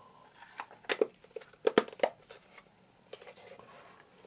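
Hard plastic clicks and knocks from a multimeter's casing being handled, as its back cover is pressed onto the body and the meter is turned over. A cluster of sharp clicks comes between about one and two seconds in.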